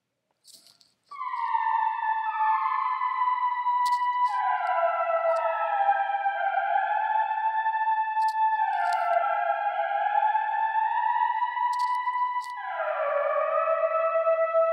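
Synth lead from Logic's ES2 played as a slow melody starting about a second in. Each note slides down into pitch and rings on under heavy SilverVerb reverb, so the notes wash into one another.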